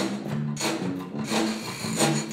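Zydeco band playing live: electric guitar and bass over drums, with a metal frottoir (vest rubboard) scraped in rhythm in sharp strokes that recur roughly every 0.7 s.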